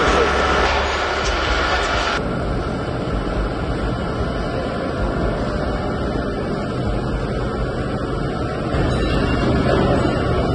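Steady rumbling noise of machinery in a large factory hall, with no clear rhythm. Its sound changes abruptly about two seconds in.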